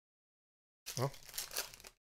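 Foil trading-card pack wrapper crinkling and tearing open for about a second, starting near the middle, with a short voice-like sound at its start.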